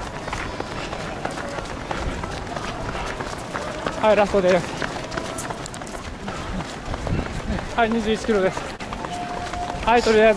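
A runner's footsteps on an asphalt road at running pace, with a short burst of voice about four seconds in and again near eight seconds.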